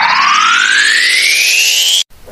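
Rising-pitch sound effect: one long tone with overtones sliding steadily upward from low to high, cutting off suddenly at the end.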